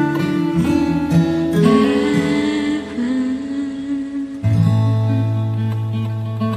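Acoustic guitar playing the slow closing bars of a ballad, single plucked notes ringing over held chords, with a new low bass note struck about four and a half seconds in and left ringing.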